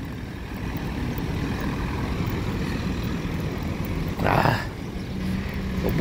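Road traffic on a city street: a steady low rumble of vehicles, with a short loud burst of noise about four seconds in.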